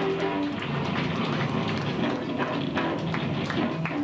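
Live rock band playing: guitar notes over a steady run of drum-kit hits.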